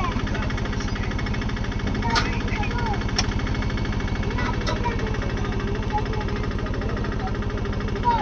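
An engine running at a steady idle with a fast, even pulse, with voices in the background and a few sharp clicks about two, three and four and a half seconds in.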